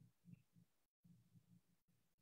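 Near silence: faint room tone with a low hum, broken by brief dropouts.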